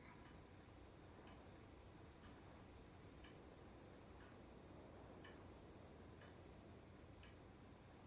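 A clock ticking faintly and steadily, about one tick a second, over a low hiss of room tone.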